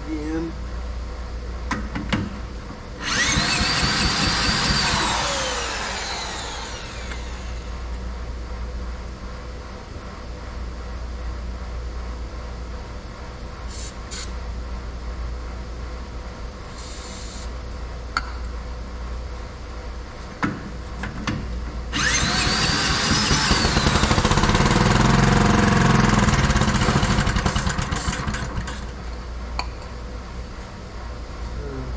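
The cement mixer's small single-cylinder gasoline engine is tried twice, about three seconds in and again just past twenty-two seconds. Each time a loud burst of running rises in pitch, then winds down and dies within a few seconds. The engine will not keep running, which the owner puts down to a blocked carburetor jet.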